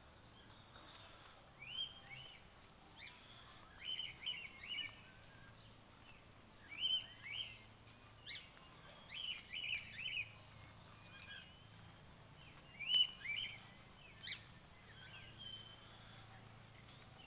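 Small birds chirping: short groups of two to four quick, high notes every couple of seconds over a faint steady background hum, the loudest group about thirteen seconds in.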